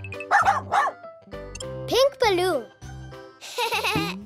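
Cartoon dog barking twice, briefly, about half a second in, over light children's background music. A rising-and-falling squeal follows about two seconds in.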